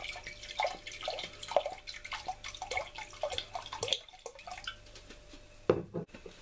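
Sherry glugging from a bottle into a glass measuring jug, splashing in short, uneven pulses. A knock near the end.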